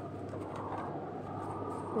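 Steady low electrical-type hum under faint background noise, with no distinct event.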